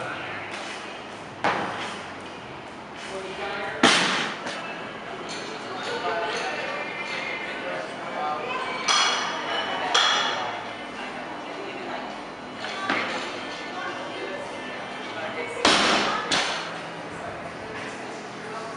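A barbell loaded with bumper plates lands on a lifting platform several times, each landing a sharp thud followed by metallic ringing from the steel bar and plates. The loudest landing comes about four seconds in.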